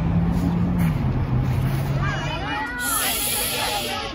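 High-pitched children's voices in the background over a steady low hum that fades out about halfway through, with a burst of hiss lasting about a second near the end.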